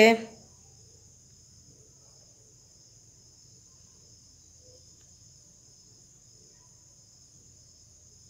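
Quiet room tone with a faint, steady high-pitched ringing and a low hum underneath, unchanged throughout.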